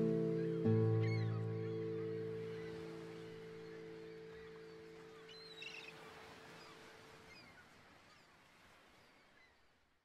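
Guitar playing the closing chord of a passacaglia: a last chord with a low bass note is plucked about half a second in and left ringing, dying away slowly to silence.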